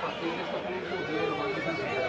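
Crowd chatter: many people talking over one another at once, a steady babble of overlapping voices with no single clear speaker.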